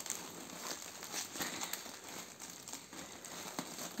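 Plastic wrapping film of a toilet-paper multipack crinkling quietly as a hand pulls at it to open it along its perforation, with a few soft crackles.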